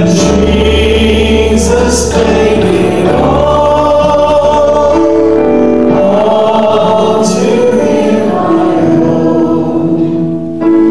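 A group of voices singing a hymn in held notes, accompanied by chords on an electronic keyboard.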